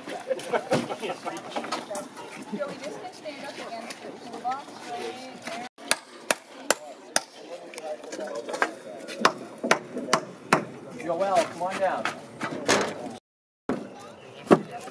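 Hammer blows on the wooden braces of a timber frame: a series of sharp, irregular knocks, coming roughly every half second in the second half.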